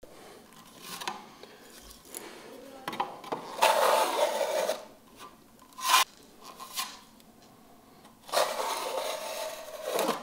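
Steel plastering trowel spreading and scraping filler across a plaster wall, in several strokes: a long scrape a few seconds in, a short sharp one in the middle, and another long scrape near the end.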